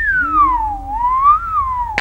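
A man whistling one long sliding note. It holds high, falls in pitch about halfway through, rises briefly, then falls again near the end.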